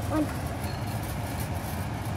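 A steady low rumble of kitchen background noise, even and unbroken, with no distinct event standing out.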